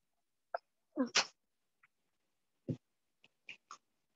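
A recorded voice from a language-learning app says the Arabic word 'nafs' ('same') once, about a second in: a short word ending in a sharp hiss. A few faint clicks and knocks follow.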